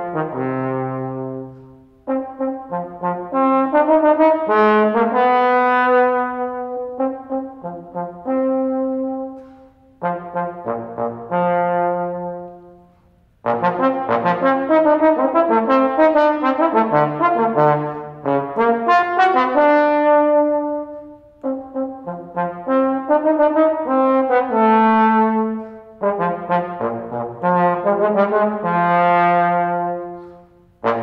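Solo trombone playing unaccompanied, moderately slow phrases of held and moving notes. Short breaks fall between the phrases, and each phrase end dies away gradually in the concert hall's reverberation.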